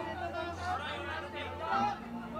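Several voices talking and calling over one another, as photographers shout to a person they are shooting, over a low steady hum.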